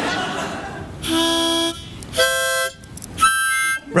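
Harmonica blown in three short held chords with brief gaps between them, each chord higher in pitch than the last.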